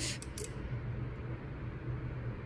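Quiet room tone: a steady low hum, with a couple of faint clicks in the first half second.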